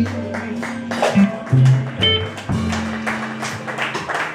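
Live blues band playing an instrumental passage with no singing: hollow-body electric guitar over electric bass and drums, held bass notes under regular drum hits.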